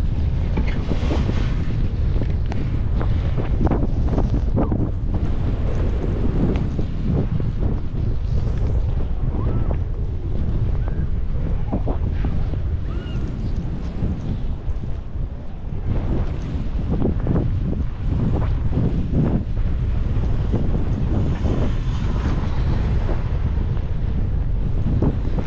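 Wind buffeting the microphone on an open chairlift: a steady, heavy low rumble with gusts, easing briefly about two-thirds of the way through.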